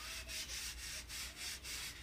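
A paper towel rubbing briskly up and down bare skin on a forearm, in quick repeated strokes at about five a second.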